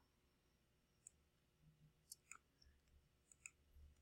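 Near silence with a few faint computer keyboard clicks: single keystrokes about a second in, then pairs of taps about two seconds and three and a half seconds in.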